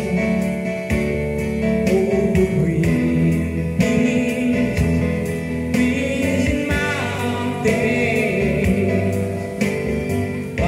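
A man singing into a handheld microphone over a backing track with a steady beat.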